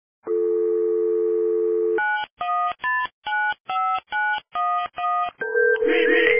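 Telephone dial tone held for under two seconds, then a quick run of about eight touch-tone keypad beeps as a number is dialled, each beep a different pitch. A steadier tone follows and music begins right at the end.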